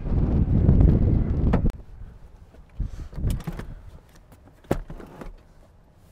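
Loud low rumble of wind on the microphone for the first second and a half, then a few soft knocks and clicks as the Citroën Grand C4 Picasso's rear passenger door is opened, with one sharp latch click near the end.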